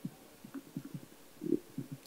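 Handling noise from a handheld microphone being fingered and tapped to check whether it is switched on: a string of soft, irregular low knocks, the loudest about one and a half seconds in.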